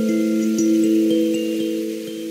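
Kalimba meditation music: slow, soft plucked notes a half second or so apart, each ringing on and overlapping the next.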